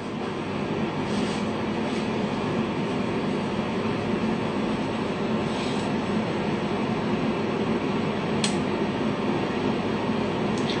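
A steady hum and hiss of machine-like background noise with no voice, growing slightly louder, with a few faint clicks.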